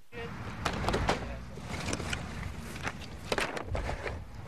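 Knocks and clatter of a work crew handling and stacking tent flooring panels, with irregular sharp bangs over a steady outdoor background noise.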